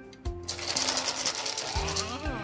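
A fast, dense rattling clatter lasting about a second and a half as a golden retriever gets up off a tiled floor, over background music.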